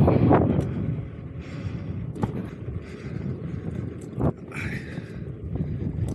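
Wind buffeting the microphone with rolling road noise while riding an electric unicycle, loudest in the first second, with two brief knocks about two and four seconds in.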